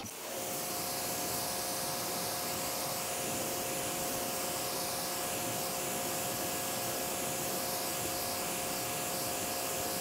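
Greenworks electric pressure washer running steadily as its jet of water sprays a car hood. A steady hiss of spray with an even two-note motor hum underneath, starting just after the beginning and holding level.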